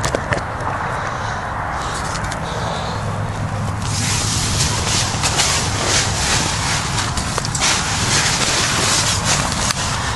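Nylon tent fabric rustling and crinkling against the camera as someone crawls in through the tent door. It gets louder and more crackly about four seconds in.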